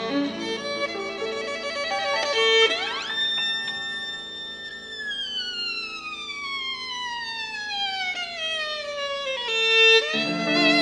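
Violin with piano accompaniment playing a csárdás: held notes, then about three seconds in a quick slide up to a high held note, followed by a long, slow slide down over some four seconds back to lower notes near the end.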